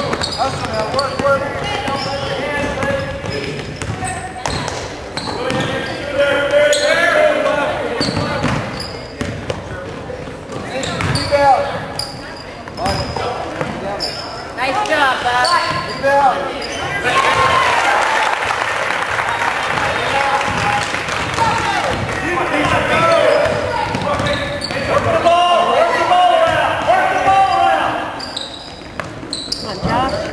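Basketball being dribbled on a hardwood gym floor, repeated sharp bounces, among spectators' voices and shouts ringing in the hall.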